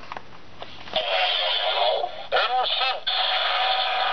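A Bandai DX Chalice Rouzer toy belt buckle reading a card: a couple of light clicks as the card is slid through its slot, then about a second in its small speaker plays loud electronic card-read sound effects, with a pitch-arching passage midway and a held electronic tone near the end.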